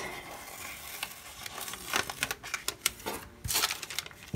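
Paper rustling and crinkling as a sticker is peeled off a sticker-book page and the book's thin translucent interleaf sheet is handled, with scattered small crackles.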